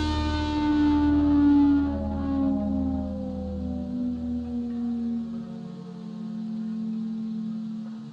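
Outro music ending on a long held chord that slowly sinks in pitch and fades out.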